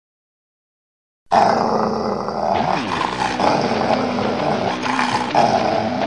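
An animal growl, starting suddenly about a second in after silence and then running on without a break.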